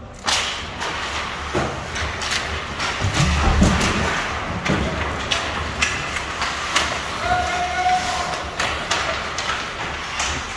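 Ice hockey play off a faceoff: a sudden clatter of sticks about a quarter second in, then repeated sharp knocks and thuds of sticks, puck and skates over the steady scrape of skate blades on ice.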